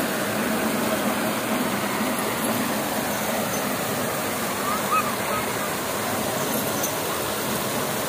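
Steady rushing and splattering of water spraying from an overhead pipe down onto a bathing elephant and splashing on the wet ground, with a faint murmur of crowd voices.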